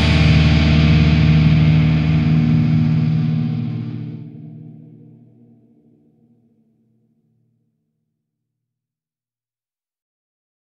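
The final distorted electric guitar chord of a heavy metal track rings out and fades away over about six seconds, leaving silence.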